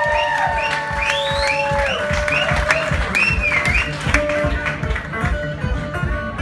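Live blues from a one-man band: a fingerpicked acoustic guitar over a steady foot-drum beat, with a line of bending high notes on top.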